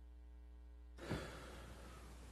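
A man's short breath, a sigh or intake of air, about a second in, over a quiet, steady low electrical hum.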